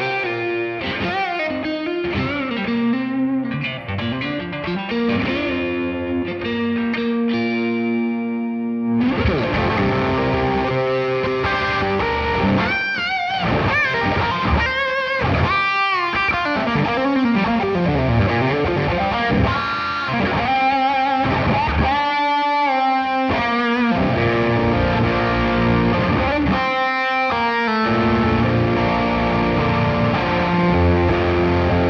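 Electric guitar played through a Boss OS-2 overdrive/distortion pedal, modded with changed coupling capacitors for more bass, into a home-built Aeon studio tube amplifier. It plays distorted riffs and chords continuously, and the sound grows fuller and heavier in the low end about nine seconds in.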